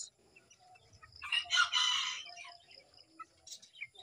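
A chicken calls once, for just over a second, starting about a second in.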